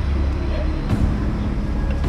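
A loud, steady low rumble with indistinct voices mixed in.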